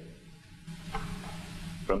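A pause in a man's speech at a podium microphone: faint hiss with a steady low hum underneath, until his voice comes back in near the end.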